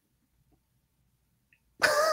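Near silence, then near the end a man starts laughing.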